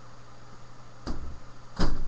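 Two dull, heavy thuds about 0.7 s apart, the second much louder, from a free-standing punching bag being struck and knocked over.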